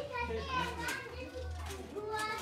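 Children's voices chattering and calling while they play, with no clear words.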